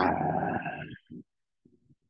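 A man's voice drawing out one syllable for about a second, then a short pause.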